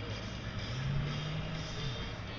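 Evinrude outboard motor on a bass boat idling as the boat moves off, a steady low engine hum. A slightly higher engine tone joins about a second in and drops away near the end.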